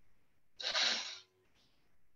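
A short, sharp burst of breath noise from a person, about half a second in and lasting under a second.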